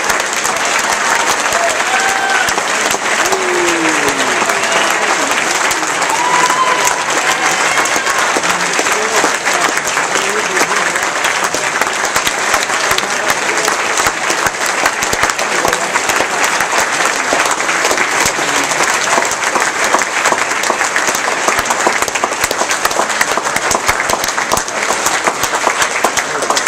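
Audience applauding steadily, dense clapping from many hands, with a few voices calling out over it in the first several seconds.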